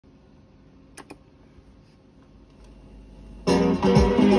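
Vinyl 45 single playing on a turntable: faint surface noise in the lead-in groove with two sharp clicks about a second in, then the record's music starts abruptly near the end, opening with guitar.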